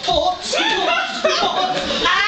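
Animated human voices, speaking or vocalising with swooping pitch, with no clear words.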